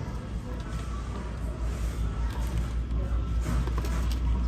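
Background music playing faintly over a steady low hum, with a few light clicks and rustles of rubber dog toys being handled on the store's display pegs.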